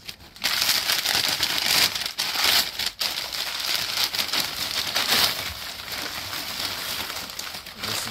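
Crumpled newspaper crinkling and rustling as a milk glass oil-lamp top is unwrapped by hand. It is loudest over the first five seconds and then eases off.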